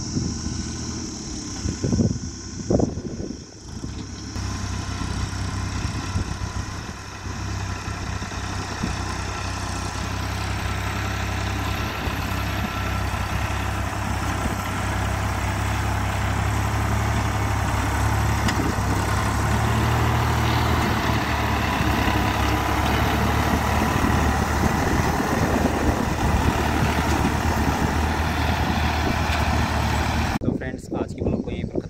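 New Holland 3630 tractor's three-cylinder diesel engine running steadily under load as it works its front dozer blade through loose soil, growing gradually louder. Two sharp knocks come about two and three seconds in.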